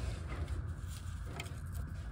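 A ratchet tightening a car's oil drain plug, giving a few faint clicks over a steady low hum.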